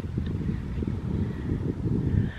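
Wind buffeting the phone's microphone: an uneven, gusty low rumble.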